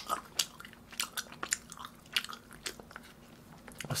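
Close-miked chewing of grilled meat: a man's mouth working, giving an irregular run of short wet clicks and smacks.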